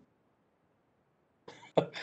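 Near silence for about a second and a half, then a short breathy burst from a man's voice and a quick spoken 'yeah'.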